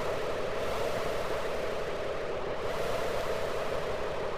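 Native Instruments Pro-53 software synthesizer preset sounding one held note from a launched MIDI clip: a steady, noise-like sound with no clear pitch.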